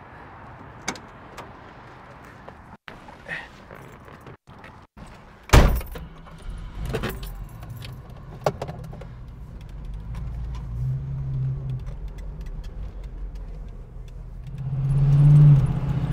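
Keys and door clicks, then the 1975 AMC Hornet's original 304 V8 starts about five and a half seconds in and runs with a steady low drone that grows louder near the end.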